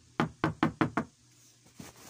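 Knocking on a door: five quick knocks in the first second.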